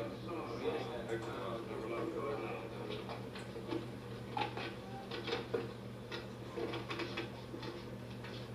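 An old film soundtrack heard through a television's speaker: low murmuring voices for the first couple of seconds, then irregular footsteps and small knocks on a floor as people walk out, over a steady low hum.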